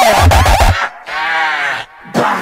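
Terrorcore track: distorted kick drums, then a little under a second in the beat drops out for one held, voice-like sample with many overtones, its pitch arching gently up and down, before a short gap.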